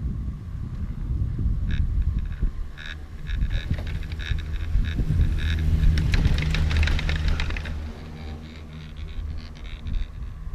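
Chairlift cable and chair grip running over a lift tower's sheave wheels: a run of clicks and rattles that grows denser and loudest about six seconds in as the chair passes under the tower, then stops, over a low rumble and wind on the microphone.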